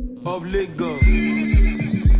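A horse whinnies: a falling, quavering call about a quarter second in. Then the song's beat comes in, with a deep kick drum about twice a second.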